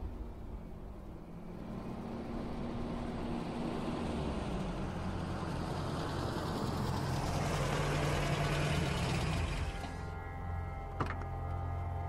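A car approaching with its engine running, the sound building as it nears, then easing to a lower steady idle as it pulls up about ten seconds in. A single sharp click follows about a second later.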